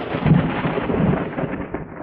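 Thunder rumbling and slowly dying away, with rain falling.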